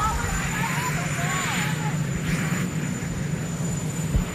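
A steady low drone with faint voices over it during the first couple of seconds.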